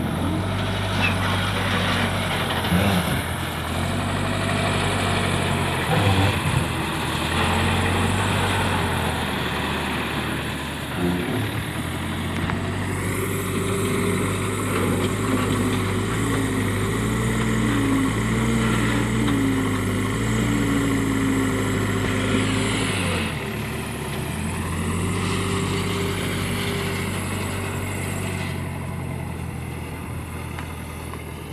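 Diesel engines of a Swaraj tractor and a JCB backhoe loader running close together, a steady low engine hum. For about ten seconds in the middle the engine note rises and wavers, then drops back to a steadier run.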